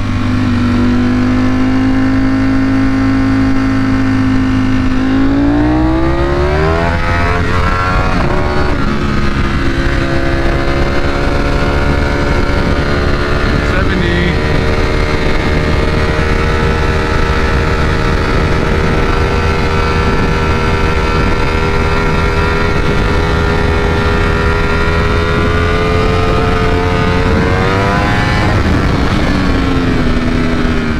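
A Ducati Panigale V4 SP's 1103cc V4 engine under way at speed, with wind rush. It holds steady revs, climbs in pitch about five seconds in, breaks briefly, then holds a steady higher note before dropping near the end.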